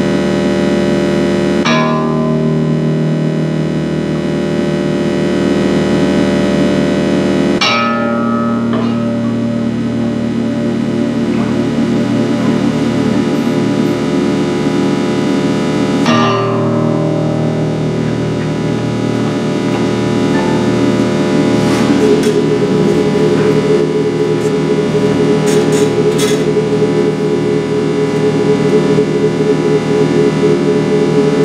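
Experimental noise improvisation: a dense drone of stacked steady synthesized square and sine tones from a live-coded colour-to-sound program, layered with a bowed acoustic guitar. The tone cluster changes abruptly about two seconds in, again near eight seconds and near sixteen seconds, and a new, higher tone enters about two-thirds of the way through, with scattered clicks near the end.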